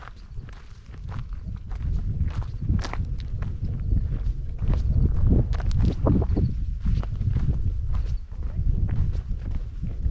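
Footsteps crunching on a gravel and dirt trail, about two steps a second, over a steady low rumble that grows louder about two seconds in.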